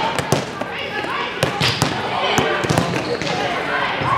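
Volleyball bounced on the gym floor several times by a server getting ready to serve, each bounce a sharp thud in the large hall, among players' and spectators' voices.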